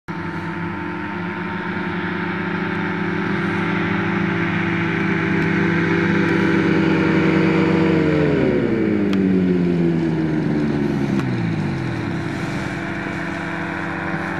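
Powered parachute trike's propeller engine running steadily and growing louder as it comes in, then throttling back with a falling pitch from about eight seconds in as it touches down and rolls out. A steady engine drone carries on underneath.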